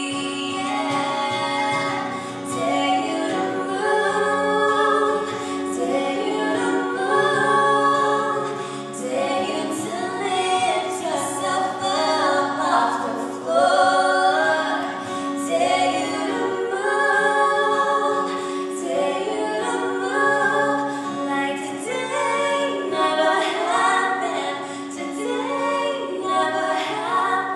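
Female voices singing a worship song in harmony through microphones, with strummed acoustic guitar accompaniment, in a large reverberant church hall.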